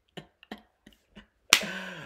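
A few faint, short clicks, then one sharp, loud snap about one and a half seconds in, followed by a brief low hum of voice.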